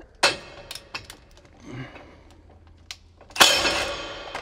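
Light metal clicks of a tool being fitted against a disc mower's cutting disc, then about three and a half seconds in a short loud burst from a cordless driver spinning off the nut that holds a mower blade on the disc.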